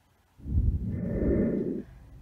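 A muffled, low rush of air or rubbing right at the microphone, starting about half a second in and lasting about a second and a half.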